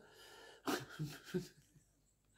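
A woman's soft laughter: three short, breathy chuckles in quick succession about a second in, quiet overall.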